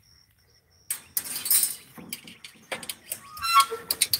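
Footsteps through dry grass and weeds, a rustling crunch that starts about a second in and goes on irregularly. Near the end comes a brief high-pitched squeak.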